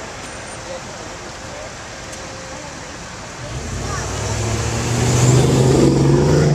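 A car drives past close by against the steady hum of street traffic: its low engine note comes in about three and a half seconds in and grows loud, peaking near the end as it passes.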